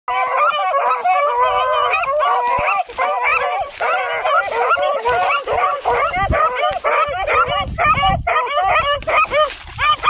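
A pack of hounds baying together, many overlapping voices calling without a break.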